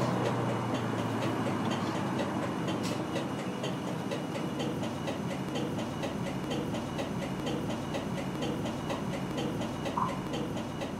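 A steady, machine-like rushing noise with a fast, even run of soft ticks through it, easing slightly in level. It is a mechanical texture within a piano-and-percussion piece.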